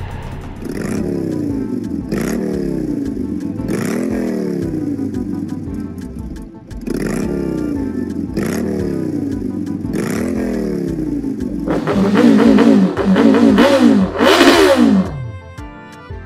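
Large sport motorcycle's engine revved in short throttle blips, about one every second and a half, each jumping up in pitch and falling back. Near the end it revs harder and longer, then the revs drop away. Background music runs underneath.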